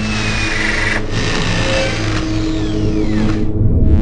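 A steady engine drone with a falling whistle-like glide over it, cutting off suddenly just after the end.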